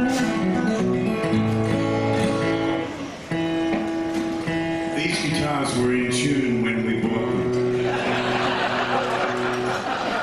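Two acoustic guitars playing an instrumental tune together, with picked notes and strums, then holding long ringing notes through the second half. A burst of audience clapping comes in near the end.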